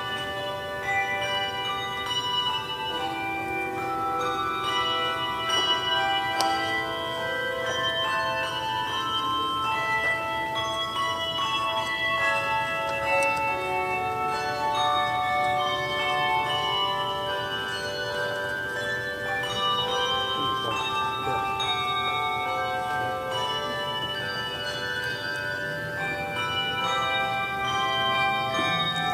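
Handbell choir playing a piece: many ringing bell notes overlapping and dying away, melody and chords sounding together throughout.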